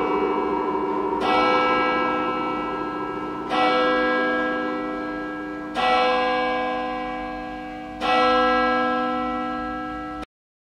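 A bell tolling slowly: four strokes about two seconds apart, each one ringing on and fading into the next.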